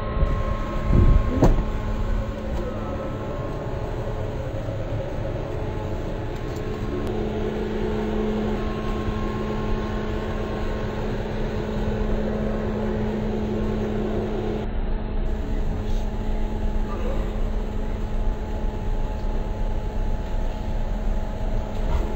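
Steady low rumble and drone of a vehicle engine idling close by, with a constant humming tone and a couple of brief clicks about a second in.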